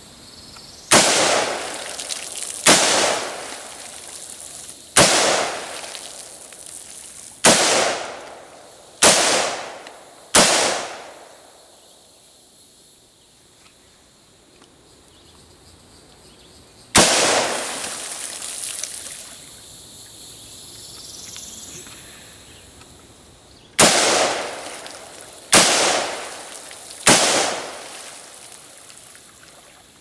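Colt LE6940 AR-15 carbine firing .223 rounds semi-automatically: ten single shots at an uneven pace, each trailed by a ringing echo. Six come in the first ten seconds, one stands alone about seventeen seconds in, and three more fall close together near the end.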